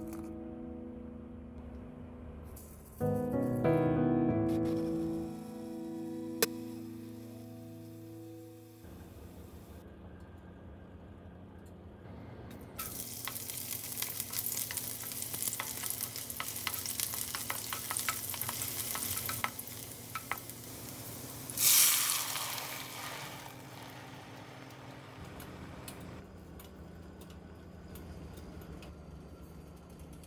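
Piano background music at first. Then chopped onion sizzles and crackles in hot oil in a frying pan. About 22 seconds in, a sudden loud surge of sizzling, typical of liquid tomato salsa poured into the hot oil, dies away over a few seconds.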